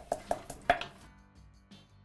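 Stone pestle pounding cardamom seeds in a stone mortar: a quick run of about five sharp knocks in the first second, then it goes quieter.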